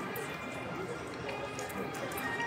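Steady background music under faint crowd chatter.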